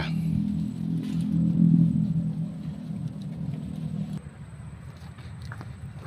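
A low engine rumble from a passing vehicle, swelling about a second and a half in and fading out at around four seconds. A few faint clicks follow.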